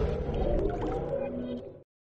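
Electronic intro jingle dying away in sustained, fading synth tones, cutting to silence about 1.8 s in.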